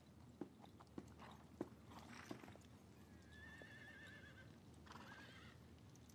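Near silence with faint background ambience: a few soft taps, then about three seconds in a distant horse whinnying with a quavering call for about a second and a half.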